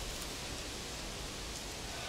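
Steady outdoor background noise, an even hiss with no distinct event.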